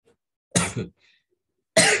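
A person coughing once, a short sharp double-peaked burst about half a second in, then the start of a short laugh near the end.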